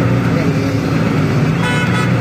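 Bus engine running steadily under road noise, with a horn sounding briefly near the end.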